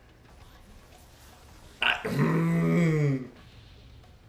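A man's voice: one low, drawn-out hum or grunt of about a second, starting just after a short click about two seconds in, its pitch dropping as it ends.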